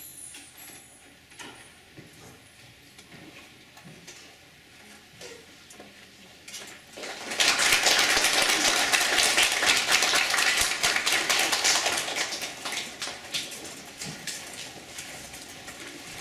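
The last of an electronic organ chord fades out at the start. About seven seconds in, an audience bursts into applause, which is loudest for a few seconds and then thins out.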